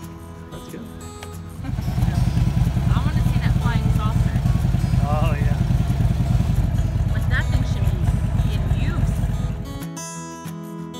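Harley-Davidson motorcycle's V-twin engine running loud and close, coming in about two seconds in and stopping just before the end.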